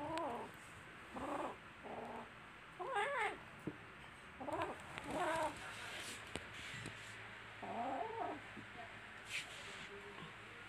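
Two young kittens squaring off in play-fighting, giving a series of short, wavering yowls, about seven in all, with the last and longest near the end.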